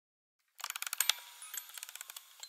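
Rapid ratchet clicking of a wind-up music box being wound, starting about half a second in after silence.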